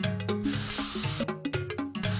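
Background music with held notes, over which a loud hissing sound effect, like a jet of steam, starts about half a second in and cuts off abruptly under a second later. A second hiss starts right at the end.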